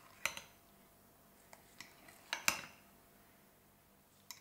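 A metal spoon clinking against a glass bowl while stirring a thick flour batter: a few scattered clinks, the loudest about two and a half seconds in.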